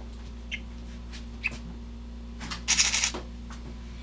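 A budgerigar gives two short, faint chirps about half a second apart from the start and again a second later, over a steady low hum. About two and a half seconds in, a brief rustling clatter is louder than the chirps.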